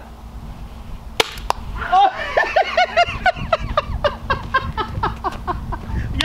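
Two sharp pops about a third of a second apart, a little over a second in: a compressed-air (PCP) pepperball launcher firing a practice round and the ball striking. Then a man's voice in a run of short, loud cries as the ball hits his leg.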